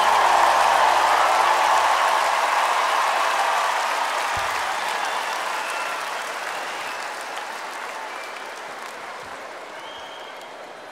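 Large arena crowd applauding and cheering at the end of a song, with the last held notes of the music stopping about two seconds in. The applause then fades away gradually.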